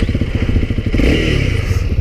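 Motorcycle engine idling at a standstill, its firing pulses running as an even, rapid beat.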